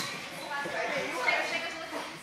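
Indistinct voices of people talking and calling out in a large room, with no clear words.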